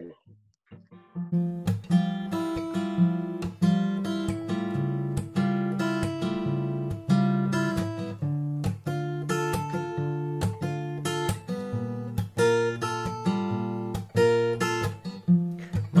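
Acoustic guitar playing the chord intro of a song in F major, starting about a second in after a brief silence.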